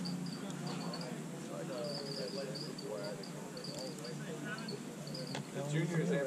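High-pitched chirping in short, quick pulses that come in irregular runs, like an insect, over a faint murmur of distant voices.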